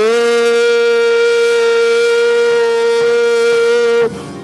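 A man's singing voice in a gospel song, sliding up into one long held note that stays steady for about four seconds and breaks off at the end.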